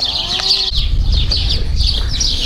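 Many small birds chirping rapidly and continuously, with one short pitched call from a farm animal about half a second in. A low rumble joins in soon after.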